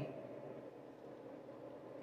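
Quiet, steady low background hum with no distinct events.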